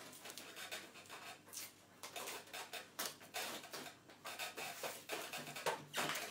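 Fabric duct tape being pulled off the roll in several short rasping pulls and wrapped around the cap and neck of a plastic bottle, with handling of the plastic.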